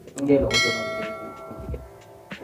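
A click, then a bright multi-tone bell chime struck about half a second in that rings and fades away over a second and a half: the notification-bell sound effect of a subscribe-button animation.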